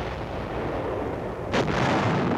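Artillery fire: a continuous low rumble of guns, with one sharp, loud cannon shot about one and a half seconds in.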